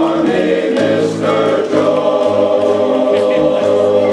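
Men's chorus singing unaccompanied in harmony, holding long sustained chords.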